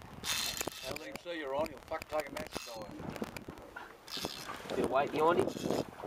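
Indistinct men's voices talking, with a few light clicks.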